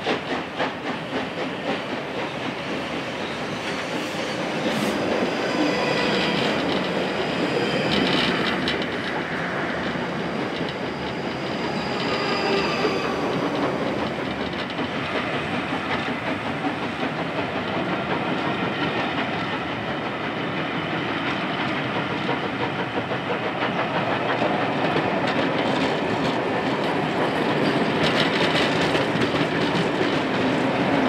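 Rake of passenger coaches of a steam-hauled excursion train rolling past, the wheels clacking over the rail joints, most distinctly in the first couple of seconds. An electric multiple unit passes on the other track early on.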